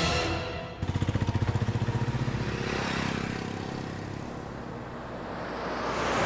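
A car's engine running with a fast, even pulsing that fades over a few seconds, then a rising whoosh near the end as the car passes, with music underneath.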